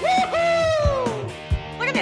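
A long, drawn-out wordless exclamation of delight in a high voice, sliding slowly down in pitch, over background music with steady held notes.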